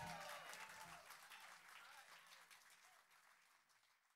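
Faint audience applause fading out to silence.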